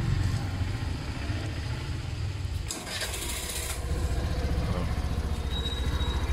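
Suzuki Burgman scooter engine starting about three seconds in, with a short burst of noise as it catches, then idling steadily. A low engine hum is there throughout, and a faint high tone comes in near the end.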